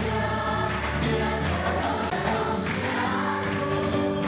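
Live gospel worship song: voices singing into microphones through the hall's sound system, with a group of voices and instrumental accompaniment.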